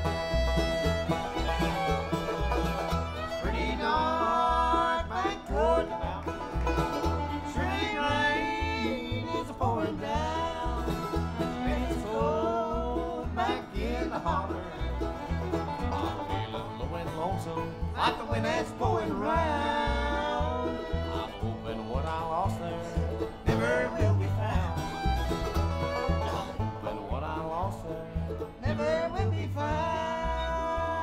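Live bluegrass band playing: five-string banjo, mandolin, acoustic guitar, upright bass and fiddle, over a steady pulsing bass line.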